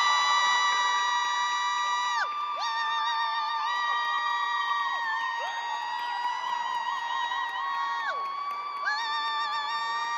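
Several young performers' voices holding long, high, steady notes in overlapping stretches. Each voice breaks off with a falling slide and comes back in, while light clapping ticks underneath.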